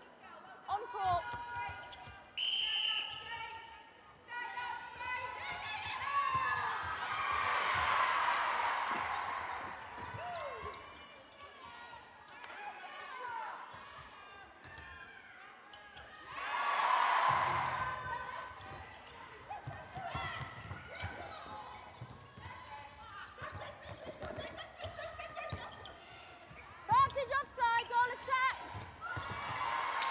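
Indoor netball match sound: shoes squeaking and feet and ball thudding on a wooden sprung court, with players' calls echoing in the hall. A short whistle blows about two seconds in, and crowd cheering swells twice, around eight and seventeen seconds in, as goals are scored.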